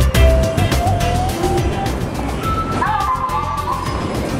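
Background music fades out about a second in and gives way to a train moving along a station platform, with steady whining tones in the last second and a half.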